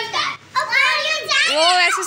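Young children's high-pitched voices calling out in play, in two loud phrases after a brief pause about half a second in.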